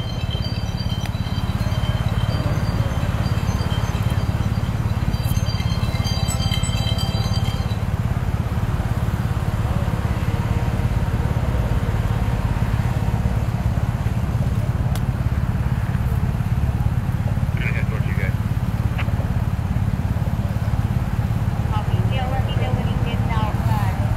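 Steady low rumble of street traffic running without a break, with faint voices that become clearer near the end.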